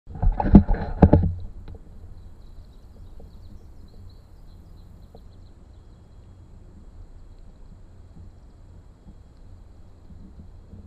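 A quick run of loud knocks and bumps in the first second and a half, typical of an action camera being handled and set in place, then a low, steady rumble from the open air on the microphone.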